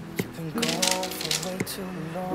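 Crumbly crust mixture scraped from a bowl with a silicone spatula and dropped into a parchment-lined baking pan: a quick patter of small clicks and rustles, densest about half a second to a second in. A song with held notes plays over it.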